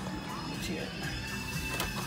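Music with singing played through a newly installed car stereo, heard inside the car from the rear Alpine Type-R 6x9 speakers.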